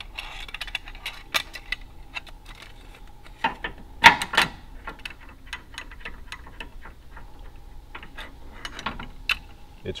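Metal clicks and clinks of a pulley and its hardware being handled and fitted to a vehicle's front tow point, with one louder clank about four seconds in.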